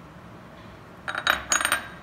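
A small glass bowl clinking against a ceramic mixing bowl as a cracked egg is tipped from one into the other: a quick cluster of ringing taps lasting under a second, about a second in.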